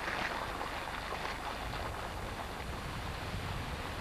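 Steady splashing of a fountain's water jets.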